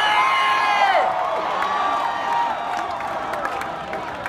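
A live band's held note ends about a second in, then a concert crowd cheers and whoops, slowly dying down.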